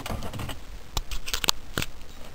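Plastic dashboard trim strip being pried loose, its clips and plastic edges giving a quick run of sharp clicks and snaps about halfway through.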